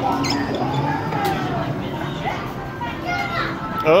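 Busy arcade game-room ambience: children's voices and chatter over music from the arcade games.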